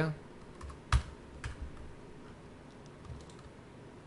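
A few sharp clicks of computer keyboard keys being pressed, the loudest about a second in and another half a second later, with fainter taps later on.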